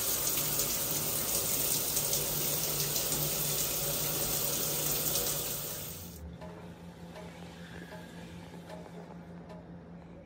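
Shower running: water spraying from a handheld showerhead in a steady hiss that cuts off about six seconds in, giving way to faint room sound.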